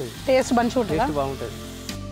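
Chicken curry sizzling and bubbling in a metal pot over a wood fire as a ladle stirs it. A voice rising and falling in pitch is heard for about a second, starting a little way in.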